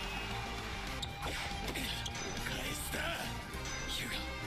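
Background music from the anime episode's soundtrack, with brief faint Japanese dialogue.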